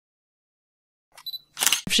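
Dead silence for about a second, then a few faint mouth sounds and a voice starting to speak near the end.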